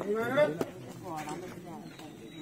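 People's voices talking, not caught as words, with one brief sharp knock about half a second in.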